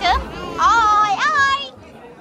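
A high-pitched voice makes a few short sing-song sounds with pitch sweeping up and down, then falls quiet near the end.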